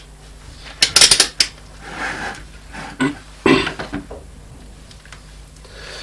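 Multimeter and its test leads being handled and set down on a wooden desk: a quick cluster of clicks and clatters about a second in, then single knocks near the middle.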